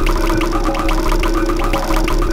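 A rapid, pulsing warble of about eight pulses a second, a sound effect from an animated art video, laid over steady mallet-percussion music.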